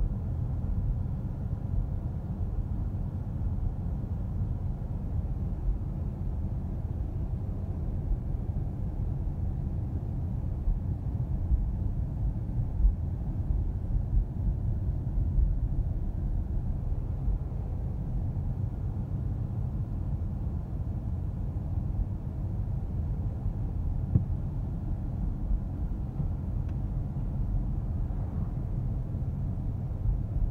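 Steady low road rumble inside the cabin of a Tesla Model S 85D electric car on the move, with no engine note. The heater fan is running on high.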